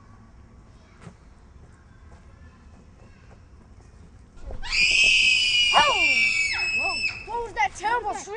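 After a few seconds of quiet outdoor background, a sudden loud, high-pitched scream is held for about two and a half seconds. Shorter falling cries from other voices overlap it near its end.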